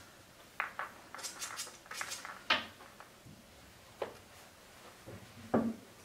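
Pool balls clicking and knocking as they are picked up and set back on the table: a scattered run of sharp clicks, the sharpest about two and a half seconds in, and a duller knock near the end.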